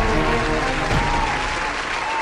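A group of people clapping and cheering, with the intro theme music fading underneath.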